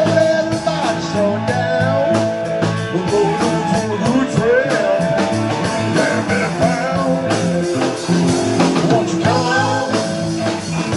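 A live band playing: electric guitar over a drum kit, with sustained low notes underneath and some bending high lines.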